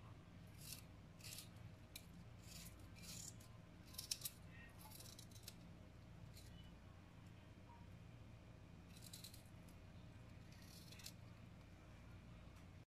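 Faint, crisp cutting clicks as a small knife slices raw garlic cloves held in the hand, about ten scattered cuts, over a low steady hum.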